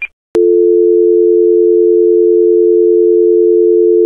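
Telephone dial tone: a click about a third of a second in, then a steady, unbroken two-note hum.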